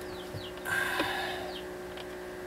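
A man's short, forceful breath out through the nose, lasting about a second, over a steady low hum.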